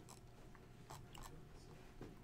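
Near silence: room tone with a faint steady hum and a few scattered faint clicks.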